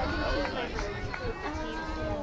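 Spectators talking near the microphone in an outdoor crowd, with no clear words.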